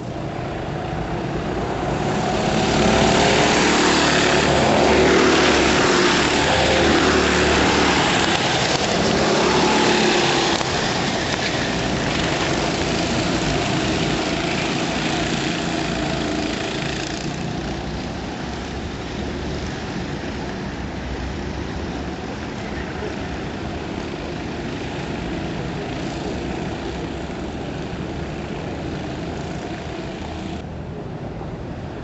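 Racing go-kart engines passing trackside, their pitches rising and falling as they go by. Loudest a few seconds in, as karts pass close, then fainter as they run on around the circuit.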